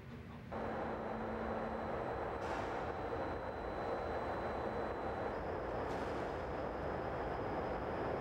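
Refuse bunker grab crane at work, closing on and lifting a load of waste: a steady mechanical rumble that comes in about half a second in, with a faint thin high whine over it.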